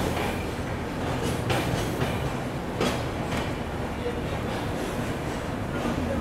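A passenger train coach rolling along a station platform as the train arrives, with a steady running rumble and a few sharp wheel clacks over the rail joints.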